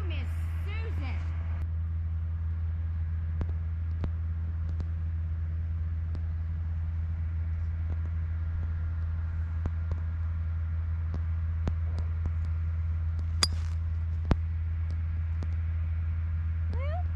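A golf club striking a teed-up ball on a tee shot: one sharp crack about thirteen seconds in, the loudest sound here, followed about a second later by a lighter tick, over a steady low hum.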